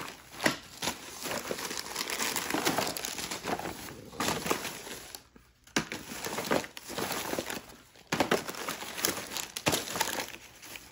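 Thin plastic trash bag crinkling and rustling as hands rummage through it among boxes and plastic packaging, with a brief lull a little past halfway.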